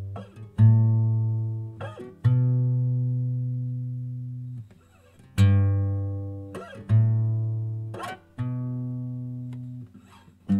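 Guitar music: single strummed chords, each left to ring and fade before the next. They alternate between a lower and a higher chord, with a short pause a little before halfway.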